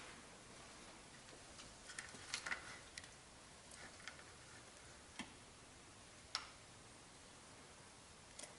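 Near silence broken by a handful of faint, sharp clicks and light handling noises, the sharpest about six seconds in, as a car-audio tweeter and its lead wires are handled and connected in a wooden test baffle.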